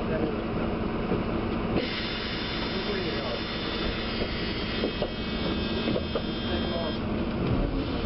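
Public transport vehicle running, with people talking in the background. A steady high whine comes in about two seconds in and stops about seven seconds in.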